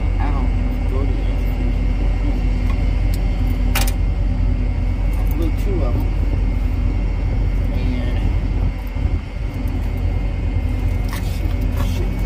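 Truck engine idling with a steady low rumble, and one sharp click about four seconds in.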